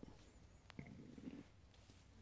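Near silence: room tone, with one faint click about two-thirds of a second in.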